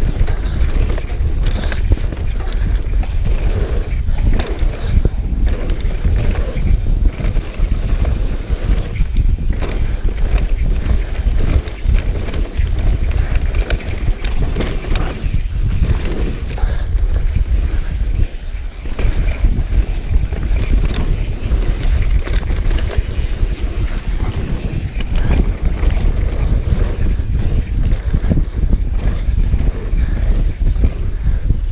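Mountain bike descending a dirt trail at speed: low rumble of tyres and wind buffeting the camera microphone, with frequent short rattles and knocks from the bike over bumps.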